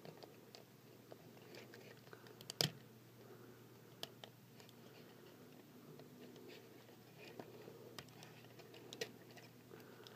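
Faint clicks and ticks of a Transformers Masterpiece Smokescreen figure's plastic parts being handled and pressed into place during transformation, with one sharper click a little over two and a half seconds in and a few smaller ones later.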